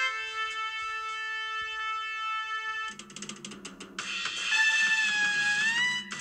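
Instrumental jazz ballad: a trumpet holds a long note. About three seconds in there is a second of quick percussive strokes, and then the trumpet returns with a new held note that rises in pitch near the end.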